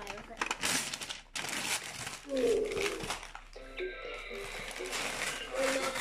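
Wrapping paper crinkling and tearing in quick bursts as a toddler pulls it off a boxed toy. In the second half, voices mix with steady electronic-sounding tones.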